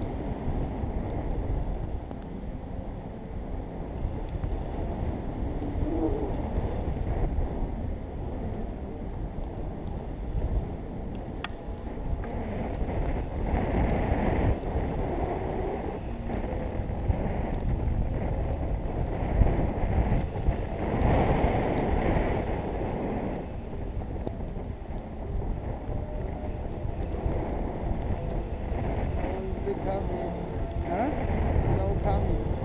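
Wind rushing over the action camera's microphone as a tandem paraglider flies, a steady low buffeting with louder gusts about halfway through and again a few seconds later.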